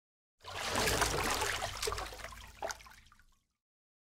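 Watery, splashing swoosh sound effect of a logo sting. It swells quickly, fades out over about three seconds, and has one short sharp click near the end.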